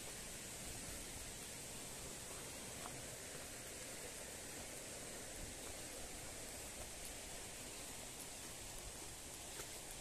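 Faint, steady outdoor background hiss with a few faint scattered clicks; no distinct footsteps or voices stand out.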